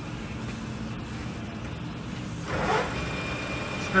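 Steady low machine hum, then about two and a half seconds in the 2002 Clausing Colchester 15-inch lathe's spindle starts up with a louder surge and settles into steady running at 625 RPM, with a thin high whine from the headstock.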